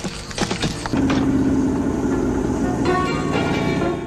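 An old truck's engine running steadily, coming in about a second in, with background music under it.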